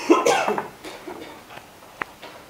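A person coughing briefly in the first half-second or so.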